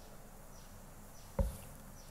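Quiet room tone picked up by a lectern microphone, with a single short, low thump about one and a half seconds in.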